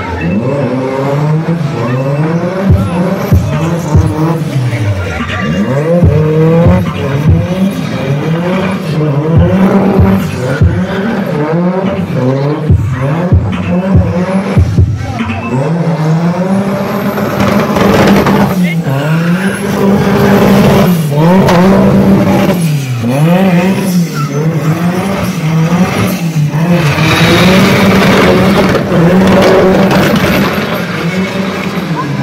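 Drift car doing smoky donuts, its engine held high and bouncing up and down in revs every second or two, with tyres squealing. Through the first half comes a run of sharp cracks, which are then replaced by longer, steadier high-rev pulls.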